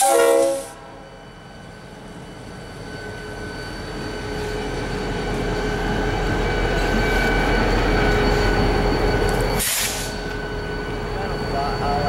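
EMD SD40-2 diesel locomotive passing close at low speed. The last blast of its horn cuts off about half a second in, then the rumble of its 16-cylinder two-stroke diesel grows louder as it goes by. A short hiss comes near the end.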